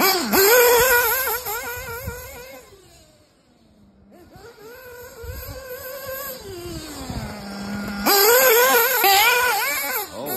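Picco P3TT .21 two-stroke nitro engine in a 1/8-scale Kyosho Inferno MP10 buggy running at high revs, its pitch wavering with the throttle as the buggy drives away and fades. Near the end it drops to a low, steady note, then revs hard again and comes back loud as the buggy passes close.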